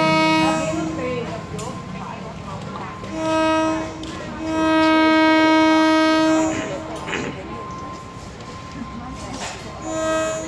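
An approaching train's horn sounding in steady single-pitched blasts: the tail of one blast at the start, a short blast about three seconds in, a long blast of about two seconds from around four and a half seconds, and another blast beginning at the very end.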